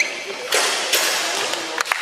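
Indoor basketball game sounds: a few sharp thumps and taps from the ball and players on the court, over background voices.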